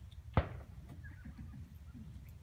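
A horse moving under handling: one sharp thump about half a second in, followed by faint scattered clicks, over a steady low rumble.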